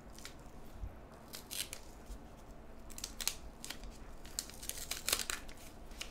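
Wax paper wrapper of a 1979 Topps basketball pack crinkling and tearing in a series of short bursts as it is peeled open.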